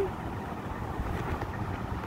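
Steady low background rumble and hiss between words, with no distinct event.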